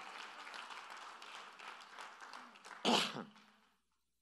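A congregation applauding, the clapping fading away over about three seconds, with one short call from a voice near the end.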